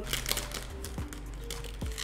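Plastic wrapper of a Club Social cracker pack crinkling and crackling as it is torn open and a cracker is pulled out, over background music.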